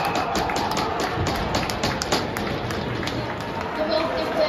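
Ice hockey in play: a quick run of sharp clacks and taps from sticks, puck and skates on the ice, with indistinct voices calling.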